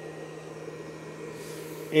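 Steady background hum and hiss, with no distinct event.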